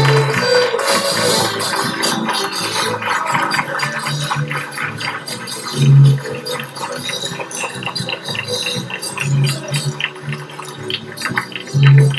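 A live Chilean folk ensemble playing: strummed guitars and an accordion over a steady rhythm, with a few deep notes standing out about halfway through and again near the end.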